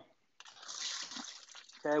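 Water draining and splashing out of a small plastic colander of soaked, raw-cut potato fries into a steel sink. It starts about half a second in, swells and then fades away: the soaking water being drained off before frying.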